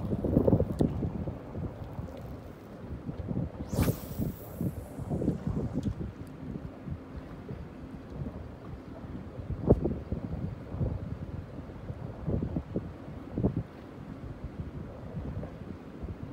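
Wind buffeting the microphone in irregular gusts, heard as an uneven low rumble, with a brief high hiss about four seconds in.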